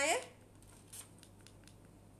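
A few faint, short clicks from the buttons of a small portable Quran speaker being pressed, after a single spoken word at the start.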